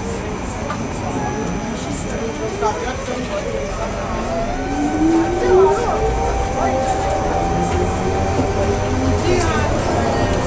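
Articulated electric trolleybus under way, with a steady rumble inside the cabin. About four seconds in, the traction motor's whine rises in pitch for a few seconds as the bus picks up speed, then holds steady. Passengers' voices come through now and then.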